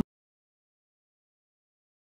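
Silence: the sound track cuts out completely.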